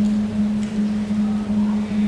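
Acoustic guitar playing a repeated low note in a steady, even pulse.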